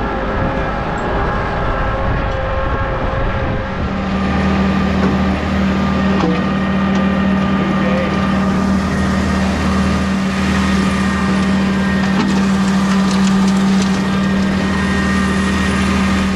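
Tractor engine running steadily. About four seconds in the sound changes to a steadier, deeper hum that holds to the end.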